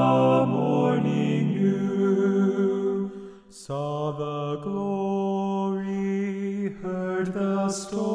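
One man's voice multitracked into four-part a cappella harmony, singing a Christmas carol in long held chords. The chords break off briefly about three and a half seconds in, then resume.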